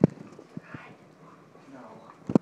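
A sharp thump right at the start, then two softer knocks about half a second later, amid scuffling from rough play-wrestling with a Labrador on the floor.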